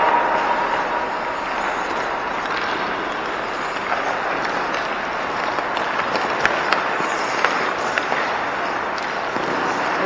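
Indoor ice rink noise during hockey drills: a steady hiss of skate blades on the ice, with a few sharp clacks of sticks and pucks, most of them in the second half.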